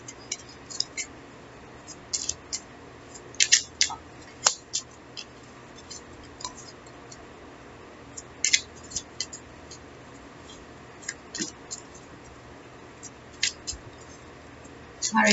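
A deck of tarot cards shuffled by hand: irregular sharp snaps and flicks of the cards, coming in small clusters every second or two, with the loudest around four seconds in and again around eight and a half seconds in.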